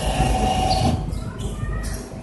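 Reverse vending machine's intake mechanism running with a steady whine as a plastic bottle is fed in, stopping about a second in; a low rumble continues under it.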